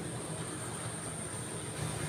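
Distant rice thresher running in the field, a steady low drone with no distinct knocks or changes.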